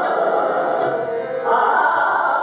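Male Hindustani classical vocalist singing in raag Shree, with harmonium accompaniment. The voice dips briefly and then swells louder about one and a half seconds in.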